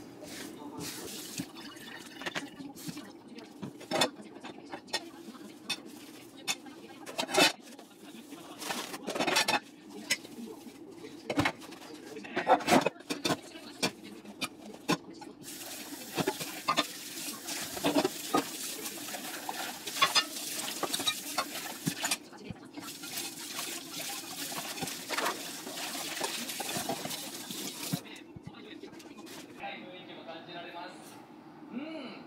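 Washing up at a small stainless-steel kitchen sink: scattered knocks and clinks in the first half, then a tap running steadily over the dishes from about halfway, pausing briefly and stopping shortly before the end.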